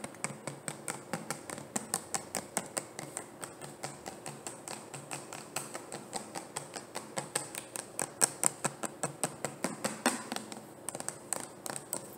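Fingernails tapping rapidly on a plastic bottle: a quick, uneven stream of light, sharp clicks, several a second, with a brief lull near the end.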